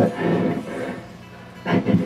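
A man's voice over a PA between songs, a brief mumble at the start and the onset of a laugh near the end, with a steady sustained tone from the band's amplified instruments underneath.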